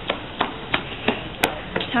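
Footsteps on a paved street, about three a second, with a single sharp click about halfway through.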